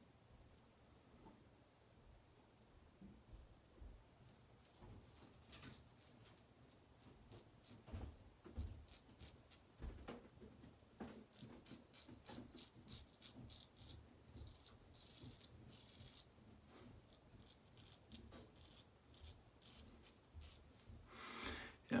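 Faint, short scraping strokes of a Heljestrand MK No 4 straight razor cutting through lathered stubble on the neck.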